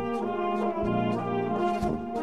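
Bohemian-style brass band playing: horns holding the tune and chords over low brass bass notes, with steady drum and cymbal beats.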